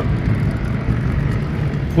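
Steady engine and road noise of a moving car, heard from inside the cabin.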